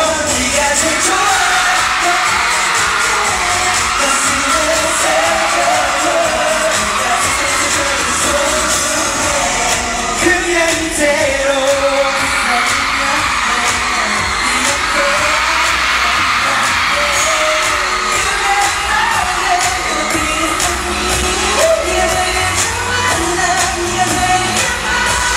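Live pop music in a large hall: a backing track with male voices singing into microphones, steady and loud throughout.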